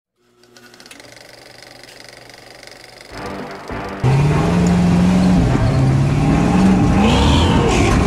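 A few faint, steady musical tones, then about halfway through a loud engine cuts in: the lifted square-body Chevy's swapped 6.0 L V8 revving under load as the truck crawls up a rock ledge, its pitch rising, dropping and climbing again.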